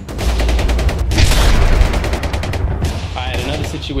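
A rapid burst of gunfire, many shots a second over a deep rumble, lasting about three seconds. A man's voice comes in near the end.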